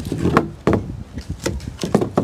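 Several sharp knocks and scraping clacks of a stiff fiberglass mold shell being worked loose and lifted off a fiberglass end cone, the shell knocking against the part and a wooden deck.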